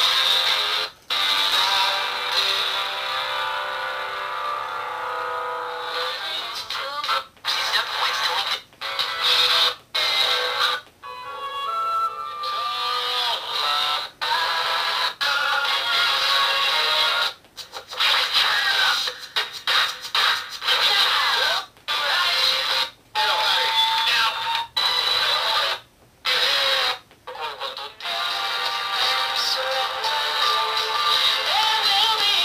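Small built-in speaker of a novelty radio pillow playing radio: snatches of music and talk, thin with almost no bass, cutting off abruptly again and again as the stations are changed with its buttons.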